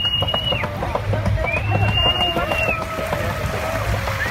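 A boat under way on open sea: a low steady engine hum with water splashing against the hull, under people's voices and long high tones that rise, hold and fall, twice.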